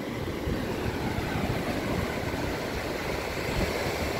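Ocean surf breaking on a sandy beach: a steady rushing with a low rumble underneath.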